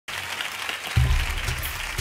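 Audience applause with hand-clapping, joined about a second in by a backing track coming in with deep bass notes.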